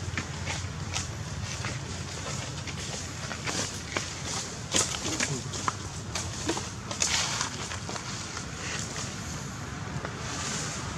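Outdoor background sound: a steady low rumble with scattered short crackles and clicks, and faint voices.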